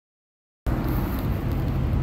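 Silence, then a steady low hum with background noise that starts abruptly a little over half a second in.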